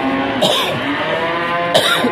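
Cattle mooing in long, drawn-out calls at different pitches, more than one animal overlapping. Two short sharp sounds cut in, one about half a second in and a louder one near the end.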